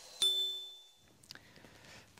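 A single bright bell-like ding, a sound-effect sting struck once just after the start and ringing out for just under a second.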